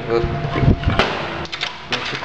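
A door being shut: a low thud a little after half a second in, then a sharp click about a second in, with a few lighter clicks near the end.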